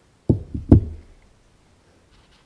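Three deep knocks on a tabletop, the last the loudest, as a folding pocket knife is set down on the table.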